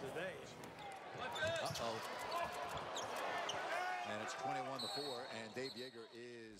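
Live sound of an NBA basketball game: a basketball bouncing on the hardwood court over arena crowd noise, with a broadcast commentator's voice coming up about four seconds in.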